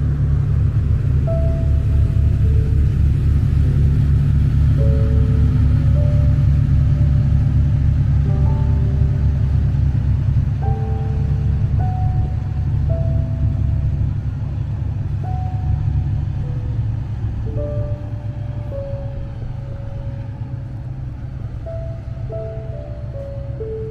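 A river tour boat's engine rumbling low as the boat passes beneath and moves away, the rumble fading over the second half. A slow piano melody plays over it.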